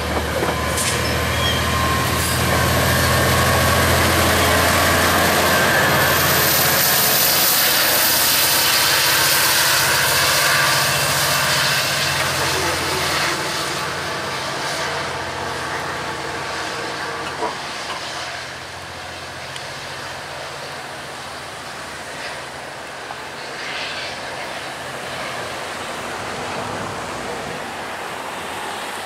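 GO Transit EMD F59PH diesel locomotive, with its 12-cylinder two-stroke 710 engine, working under power as it pushes a bilevel passenger train away, a steady low engine drone over wheel and rail noise. Loud for about the first dozen seconds, then fading as the train recedes.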